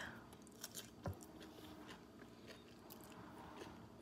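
Faint crunching and chewing of a bite of raw cucumber slice topped with tuna salad, with a few soft crisp clicks, the clearest about a second in.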